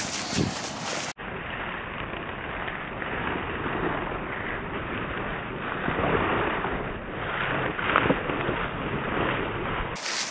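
Wind noise on the camera microphone, a steady rushing sound. About a second in there is an abrupt cut, after which it sounds duller and muffled.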